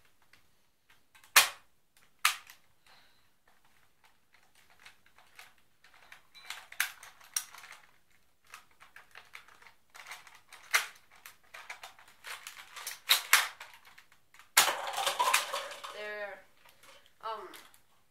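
Spring-powered Nerf N-Strike Elite Spectre REV-5 dart blaster being fired and primed: a sharp snap about a second and a half in is the loudest sound. It is followed by a long run of plastic clicks and clacks from the priming action, the turning five-round cylinder and further shots.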